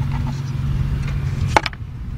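Steady low hum of an idling engine, with one sharp metallic clink about one and a half seconds in.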